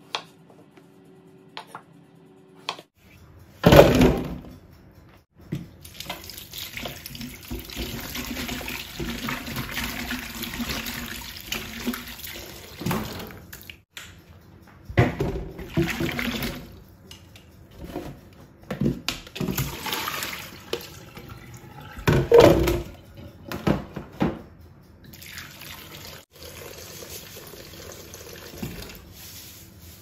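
A few light knife cuts on a wooden chopping board, then a kitchen tap running into a stainless steel sink. Several loud knocks of a plastic colander and bowl against the sink as peeled potato chunks are rinsed.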